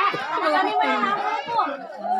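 Several people talking and calling out over one another, crowd chatter with no single clear speaker.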